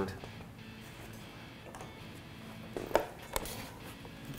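Faint background music, with two or three short sharp clicks about three seconds in as welding helmets are snapped down.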